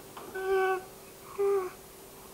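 Young infant cooing: two short vocal sounds about a second apart, each held on one pitch, the second dipping at its end.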